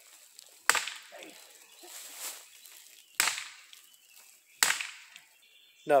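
Cold Steel Walkabout polypropylene walking stick swung like a bat, its shaft striking a tree trunk three times. Each strike is a sharp crack, the strikes coming between one and a half and two and a half seconds apart.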